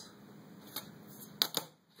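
A few light clicks and taps of small hard objects handled on a tabletop: one about three quarters of a second in, then a sharper pair about half a second later.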